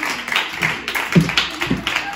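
A group of young children clapping, uneven and scattered, with a few children's voices mixed in.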